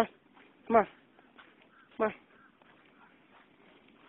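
A man's voice calling 'come on' to a dog, then one more short, loud pitched call about two seconds in, over faint outdoor background.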